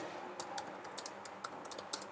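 Computer keyboard typing: a quick, irregular run of light keystroke clicks as a line of text is typed.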